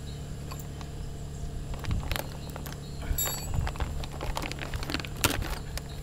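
A plastic parts bag rustling and small metal fittings clicking and clinking as a kit is unpacked by hand, with several sharp clicks, the loudest about five seconds in, over a steady low hum.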